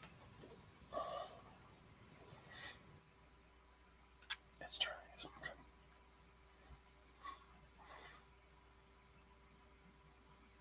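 Faint, indistinct voice sounds in short murmured or whispered bits, the loudest a few seconds in, heard over a video-call line with a faint steady hum beneath.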